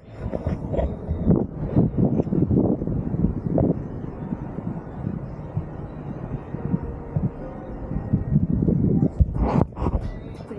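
Wind buffeting the camera's microphone: a gusty low rumble that rises and falls in strength.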